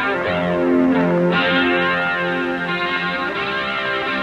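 Instrumental rock music with no vocals: an electric guitar played through effects and distortion, holding notes that change every half second or so.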